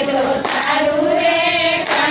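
A group of women singing a Gujarati devotional song together in unison, keeping time with hand claps. Claps fall about half a second in and again near the end.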